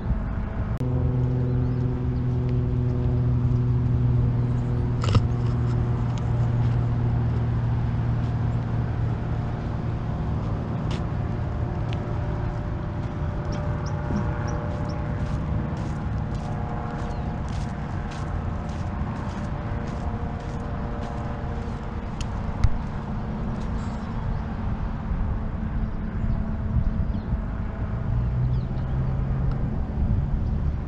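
A steady low engine hum over a constant rumbling background, holding one pitch through the first half, with a run of light sharp clicks in the middle.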